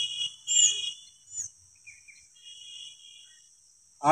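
Insects droning steadily at a high pitch, with a few faint thin tones over them, one held for close to a second near the middle.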